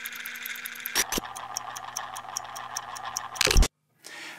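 Title-card sound effect: a steady low electronic hum under fast, evenly spaced ticking. A whoosh comes about a second in and a louder one near the end, then the sound cuts off suddenly.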